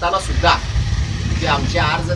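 A man speaking, with pauses, over a steady low rumble.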